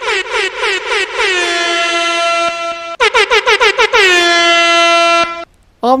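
Air horn sound effect: a run of quick short blasts, about seven in a second, then one long held blast, the pattern played twice, each blast sliding down onto the same note. It cuts off shortly before the end.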